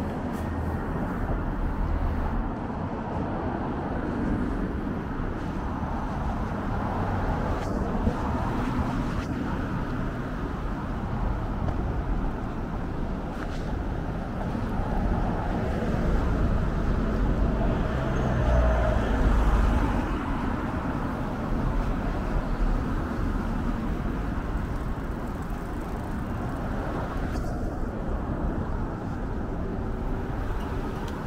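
Street traffic: steady city-road noise of cars and vans driving past, with a low rumble. It swells for a few seconds past the middle as a louder vehicle goes by.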